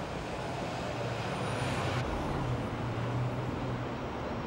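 Road traffic noise: a steady rumble of vehicles, with a low engine hum that grows stronger in the middle.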